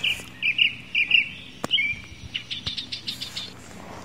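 Small birds chirping: a series of short, quick chirps in the first half, then a fast run of brief notes past the middle. A single sharp click sounds about one and a half seconds in.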